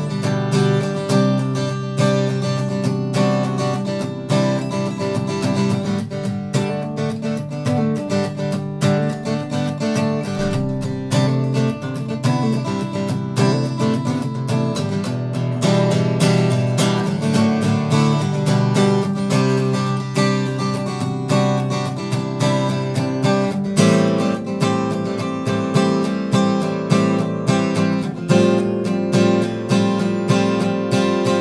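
Maestro Victoria ME cutaway acoustic guitar, with Macassar ebony back and sides and an Adirondack top, played in a steady rhythm of picked and strummed chords, with a strong bass. The player describes its tone as big in bass and treble with scooped mids. The chord texture changes about two-thirds of the way through.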